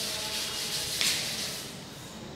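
A chalkboard duster rubbed across a chalkboard, wiping off chalk writing. The scrubbing is strongest about a second in and fades near the end.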